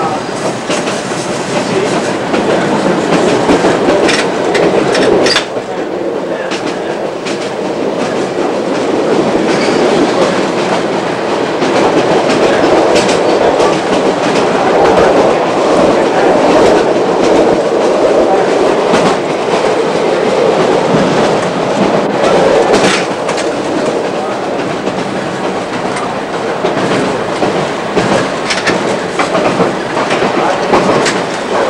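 Chicago L rapid-transit car running at speed, heard from inside the motorman's cab: a steady rumble of the running train with irregular sharp clicks from the wheels over the rails. It grows louder about a third of the way in and eases slightly near the end.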